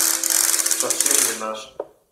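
A loud rustling, scratching noise for about a second and a half, fading out, while the last plucked string notes still ring under it.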